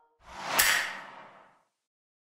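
A single whoosh sound effect for an animated logo. It swells over about half a second to a sharp crack at its peak, then fades away by about a second and a half in.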